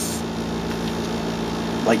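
Cooling fans of a switched-on COB LED grow light running with a steady hum.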